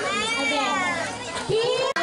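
A group of young children calling out and chattering in high voices, with one long high-pitched call in the first second. The sound cuts off abruptly just before the end.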